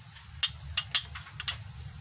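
Porcelain cups and bowls clinking against each other as they are handled in a pile: about five sharp clinks, starting about half a second in, over a steady low hum.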